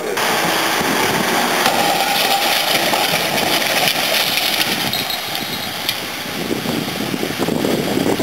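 Vehicle crash test: a loud, steady mechanical rush of the test car's run, with a few sharp knocks as the car strikes a concrete road barrier and overturns.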